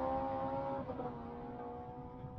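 A vehicle engine running at steady revs, with a brief wobble in pitch just under a second in, gradually fading out.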